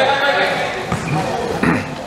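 Players' voices calling out during a wheelchair basketball game, with a basketball bouncing on the wooden court.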